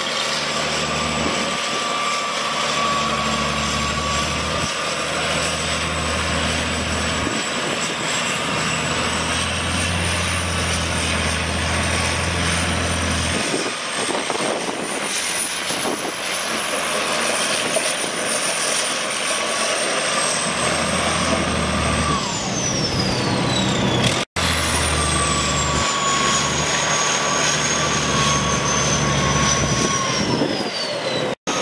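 International Harvester DT466 six-cylinder turbo diesel of a 1979 Galion T-500M motor grader running steadily. Its low note changes several times, over a thin high whine that slowly rises and then falls away.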